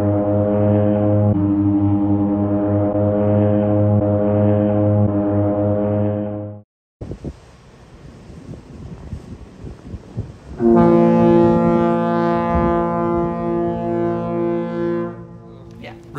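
Ship's horns in a harbour: one long, deep, steady blast that cuts off abruptly about six and a half seconds in, then, after a few seconds of quieter harbour noise, a second long blast starting near eleven seconds and fading near the end.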